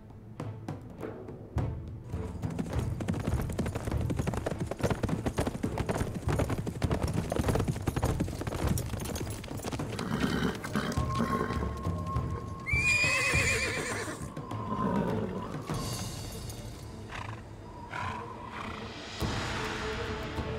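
Several horses galloping, a dense run of hoofbeats on soft ground, with a horse neighing loudly about two-thirds of the way in. Background music plays throughout.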